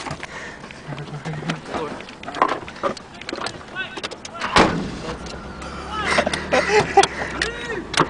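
A car engine is started about halfway through, with a sharp loud onset, and then idles with a low steady hum. Faint voices and laughter run underneath.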